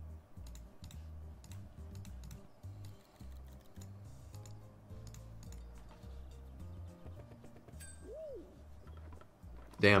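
Quiet slot-game background music with a low bass line, over irregular light clicking of computer keyboard typing throughout. A short tone rises and falls a little after eight seconds.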